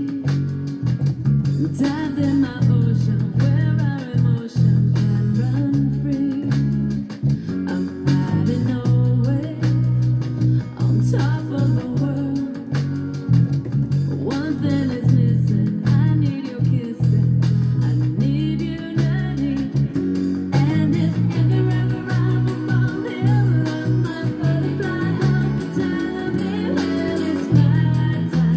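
Electronic dance-pop track with a fingerstyle bassline played along on a Fender Jazz Bass Road Worn with flatwound strings. The bass notes are the loudest part, changing pitch in quick runs.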